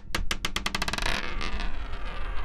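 Logo sound effect of a button spinning down on a hard surface: sharp clicks come faster and faster for about a second, then merge into a dense rattle over a low rumble.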